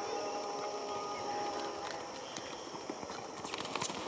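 Galloping horse's hooves pounding on dry dirt, faint at first and growing louder and sharper near the end as the horse comes close.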